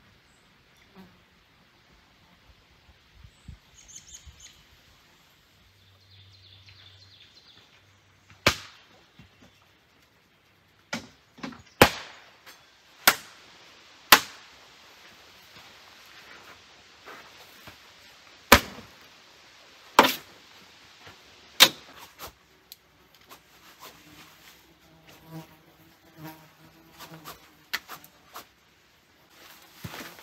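Biting flies (horse flies and deer flies) buzzing around, with a string of sharp slaps from a fly swatter, seven or eight loud cracks spread over about fifteen seconds in the middle.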